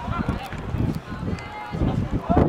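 Shouts and calls from players and spectators on an outdoor football pitch, short and scattered, over a gusty low rumble of wind on the microphone.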